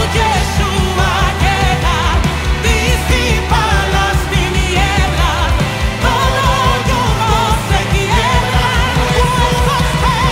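Live worship band: a woman's lead vocal sung with vibrato over drum kit, bass, electric guitars and keys. About six seconds in, the drums and bass shift to a tighter, choppier beat.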